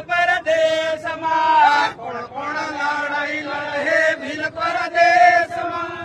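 Male voices chanting an Adivasi rallying song about the Bhil Pradesh struggle, in a sing-song line with long held notes.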